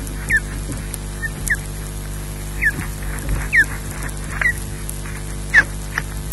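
Osprey giving short, high, whistled calls that slide downward, about one a second, six in all. Under them runs a steady low hum.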